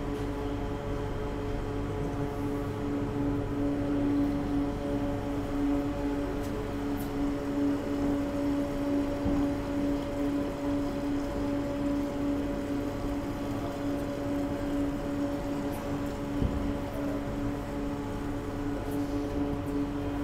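Steady machinery hum in a distillery's washback room, holding one low tone with fainter higher tones over it, and a single light knock about sixteen seconds in.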